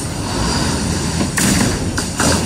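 Steady, noisy rumble of construction-site background noise, with a brief brighter hiss about one and a half seconds in.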